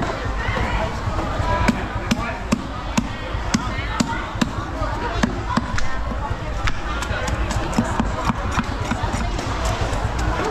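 A cleaver chopping fish on a thick wooden chopping block: sharp repeated knocks, roughly two a second.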